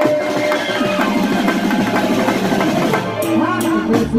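Live garba music: a dhol beaten with sticks in fast, dense drumming over keyboard and drum kit, with sustained melody notes on top.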